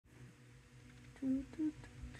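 Two short hummed vocal sounds, a person going "hm… hm" about a second in, over a faint steady low hum, with a few faint ticks.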